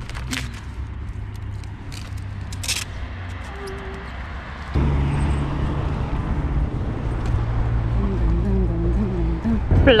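Outdoor street noise with traffic rumble, turning suddenly louder about halfway through, with faint voices in the background.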